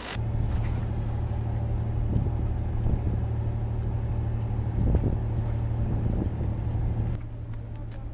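Steady low mechanical hum of ship machinery on a cruise ship's open deck, with a few soft knocks. The hum drops away about a second before the end.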